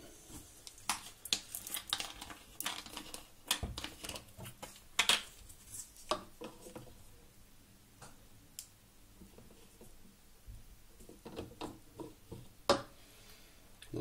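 Irregular small clicks and taps as a plastic syringe is refilled with methylated spirits by hand, busiest in the first half and again shortly before the end.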